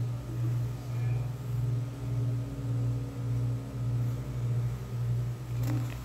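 A low steady hum that throbs evenly, swelling and fading about twice a second.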